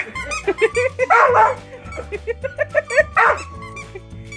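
Small dog barking and yipping at a plush squeaky toy, with the toy squeaking as it is squeezed; two louder barks, about a second in and near three seconds. Music plays underneath.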